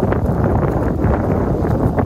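Wind buffeting the camera microphone outdoors: a loud, uneven rumble with constant gusty crackle.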